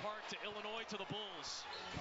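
Basketball bouncing on a hardwood court, a few sharp bounces heard through the game broadcast, with voices over it.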